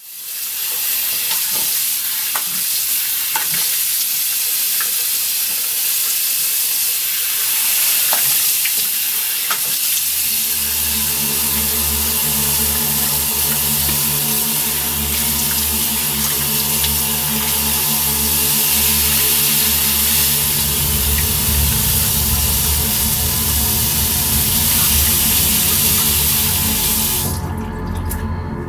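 Tap water running steadily into a bathroom sink, a loud even hiss that cuts off abruptly near the end. Low, droning music tones come in under it about ten seconds in and grow stronger toward the end.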